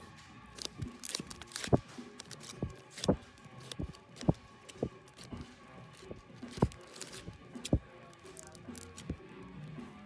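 Vinyl LPs in plastic sleeves being flipped through in a record bin: irregular knocks and slaps as each record falls against the next, with plastic rustling between. Shop background music plays faintly under it.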